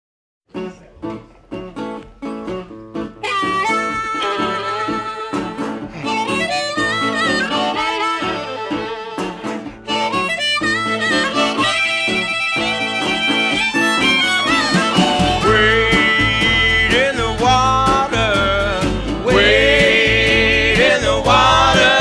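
Instrumental intro of an acoustic string-band gospel-blues song. Plucked strings set a rhythm about half a second in, a harmonica melody with bending notes joins a few seconds later, and a low bass line comes in about fifteen seconds in.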